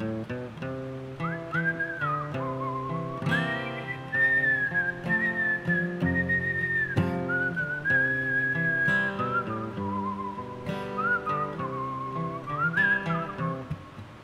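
A man whistling a melody over acoustic guitar strumming, in a break between sung verses. The whistle is a clear single tone with long held notes and short slides between them. It comes in about a second in and stops just before the end.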